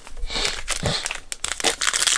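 Foil wrapper of a hockey card pack crinkling in the hands and being torn open, a run of crackles and small snaps.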